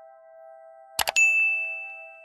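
A quick double mouse click about a second in, followed at once by a bright notification ding that rings on and slowly fades. It is the sound effect of the subscribe-and-bell animation.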